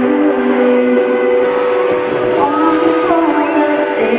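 Live pop band playing through a concert PA, heard from the audience: held synthesizer chords with cymbal hits at uneven intervals, before the vocal comes in.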